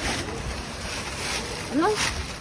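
Black plastic garbage bags rustling and crinkling as gloved hands rummage through them, with louder stretches near the start and about a second and a half in.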